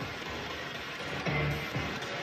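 Spirit box sweeping through radio frequencies: a steady hiss of static broken by brief snatches of sound.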